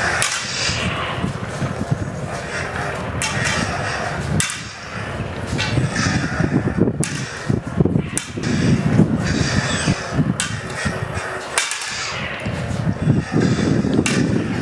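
Prop lightsaber blades knocking together in sharp, irregular clacks during a sparring drill, over a steady low rumble.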